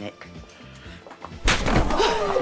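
A sudden loud impact about one and a half seconds in, from a blow landing as two people scuffle.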